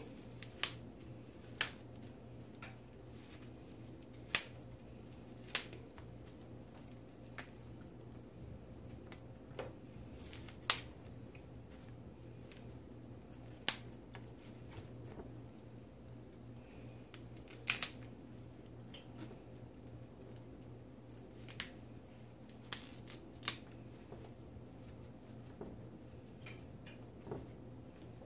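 Broccoli being broken into florets by hand over a steel bowl: scattered sharp snaps and clicks, irregularly spaced, over a faint steady hum.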